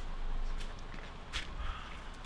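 A few footsteps on wet concrete steps as a person climbs them, over a steady low rumble.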